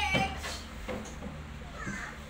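A young child's high-pitched, meow-like vocal cry, falling in pitch at the start, with a short rising cry near the end.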